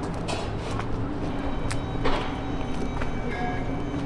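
Steady outdoor ambience with a low, constant vehicle hum and a few light taps scattered through it.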